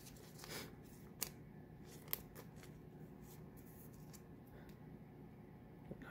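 A Pokémon trading card being slid by hand into a clear plastic card sleeve: a faint soft rustle of plastic, then two light ticks a second apart.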